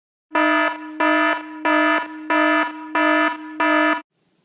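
An electronic alarm-like tone beeping six times at an even pace, about three beeps every two seconds, each beep one steady buzzy pitch that drops to a softer hold before the next. It cuts off abruptly after the sixth.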